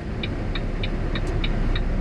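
Cab of a Volvo 780 truck with a Cummins ISX engine rolling slowly: a steady low engine and road rumble, with an indicator ticking evenly about three times a second.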